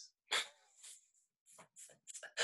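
Soft, breathy laughter: a few short airy huffs, the first and loudest about a third of a second in, with fainter ones after it.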